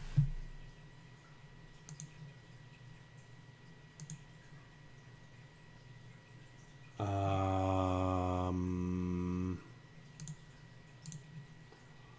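Computer mouse clicking every second or two while lines are drawn in CAD software. About seven seconds in, a louder low steady hum lasts about two and a half seconds, its pitch stepping down slightly partway through.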